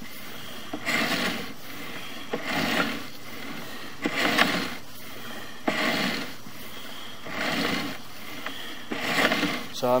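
Sewer inspection camera's push cable being pulled back out of the line hand over hand. Each stroke is a scraping rub, coming about every second and a half.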